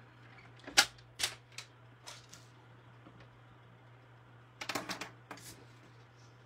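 Clicks and clacks of a plastic paper trimmer and card stock being handled and moved on a tabletop. There is one sharp clack about a second in, a few lighter clicks after it, and a quick run of clicks near the five-second mark.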